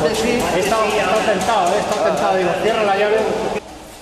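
People talking in Spanish, with no other sound standing out. The voices stop suddenly near the end, leaving a quieter background.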